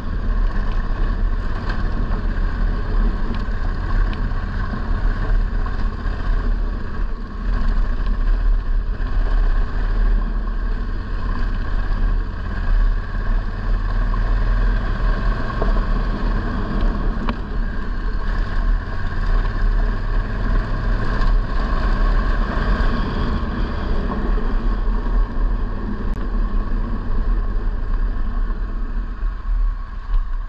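A vehicle engine running steadily while under way, with a constant low rumble and no let-up until it eases slightly near the end.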